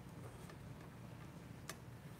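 Two light clicks, a faint one about half a second in and a sharper one near the end, from a metal camera hand wheel being handled and pulled off its mount, over a low steady room hum.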